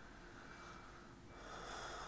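Faint breathing through the nose close to a clip-on microphone: a soft breath early, then a stronger breath near the end.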